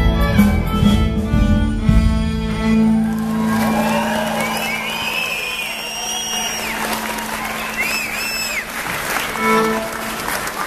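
A fiddle tune with bass backing ends about three seconds in. An audience then breaks into sustained applause, with cheering and whistles rising and falling over it.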